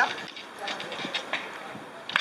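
Irregular light metallic clicks and rattles from a road bike's chain, rear derailleur and cassette as the rear wheel is pushed into the dropouts with the derailleur held back by hand.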